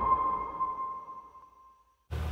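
The final note of an electronic logo jingle ringing on as a single sustained tone and fading away, dying out about a second and a half in.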